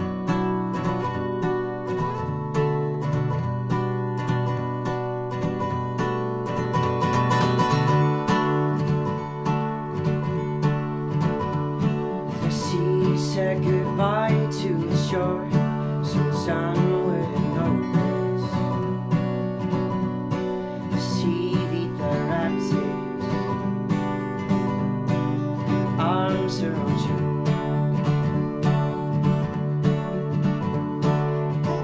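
Acoustic guitars strumming and picking an unplugged folk-pop song. About twelve seconds in, a higher wavering melody line joins and comes and goes.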